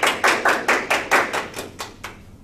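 A small group applauding, with distinct claps at about four to five a second that die away at the end.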